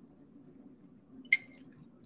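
A drinking glass clinks once, a little over a second in, over the low steady hum of a room fan.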